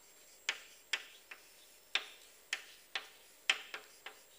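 Chalk clicking against a blackboard while a word is written: about eight sharp taps at uneven intervals.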